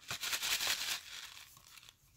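Handmade paper shaker easel card being moved and shaken in the hands: a burst of papery rustling and rattling from the card stock and its loose shaker bits, loudest in the first second and then fading out.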